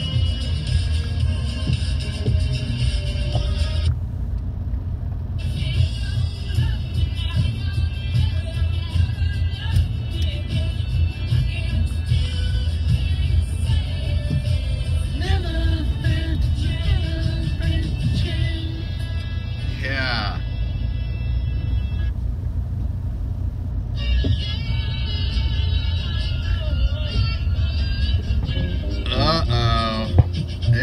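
Music with singing playing inside a moving car, over the car's steady low road and engine rumble.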